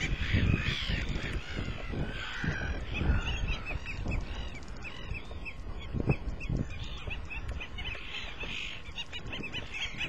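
Several South American stilts calling: a dense overlapping run of short, sharp notes that thins after about three seconds into a steadier series of single notes. A few low thumps sound under the calls, the loudest about six seconds in.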